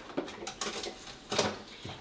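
A few light clinks and knocks as things are handled in an open refrigerator, with the loudest knock a little past the middle.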